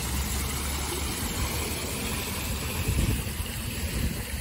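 Water from an outdoor fountain splashing and falling into its basin, a steady rush, with a continuous low rumble underneath.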